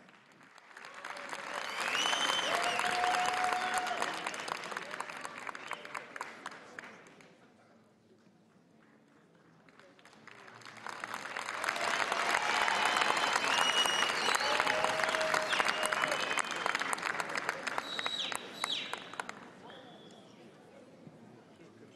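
Concert-hall audience applauding in two waves, each swelling up and dying away, with a near-quiet gap of about two seconds between them. A few calls from the crowd rise over the clapping.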